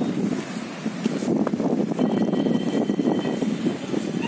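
Wind buffeting a phone's microphone: a steady, fluttering rush.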